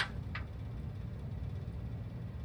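Steady low background hum, with one faint, short rustle about a third of a second in as a sheet of clear acetate is handled.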